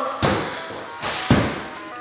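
Dull thuds of a child landing on the floor during a performed routine, three of them in quick succession, over music playing in the background.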